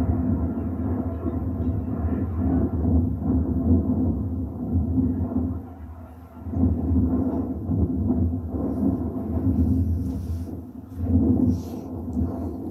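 Harrier jump jet's Rolls-Royce Pegasus turbofan, a distant low rumble that swells and fades unevenly and dips briefly about halfway through and again near the end.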